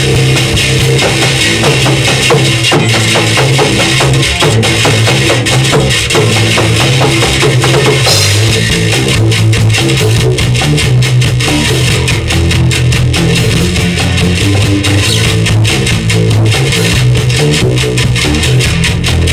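Loud live rock band playing an instrumental passage on drum kit and guitar, with no vocals.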